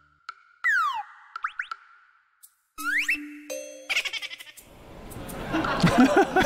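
Cartoon comedy sound effects: a falling whistle-like glide, a few quick rising boings, another rising glide and a short held tone. Near the end a swelling wash of noise with voices builds up.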